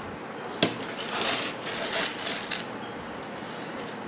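Handling noise from a microwave-oven magnetron and its removed ring magnet on a cardboard-covered workbench: one sharp click about half a second in, then about a second and a half of rubbing and scraping.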